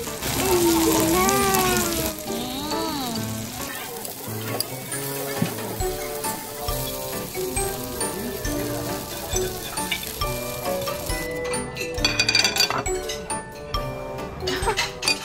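Steak sizzling on a preheated serving plate through the first half, under background music. Near the end, a few sharp clinks of cutlery on a plate.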